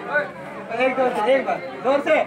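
Chatter of several people's voices talking at once.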